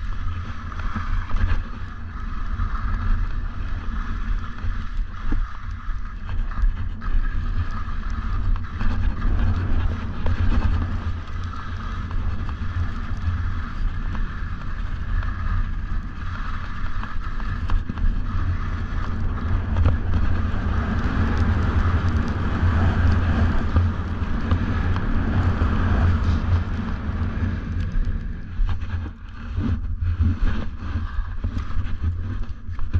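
Wind rumbling and buffeting on a GoPro Hero 8's microphone during a fast ski descent, over the steady hiss of 4FRNT Devastator skis sliding on snow.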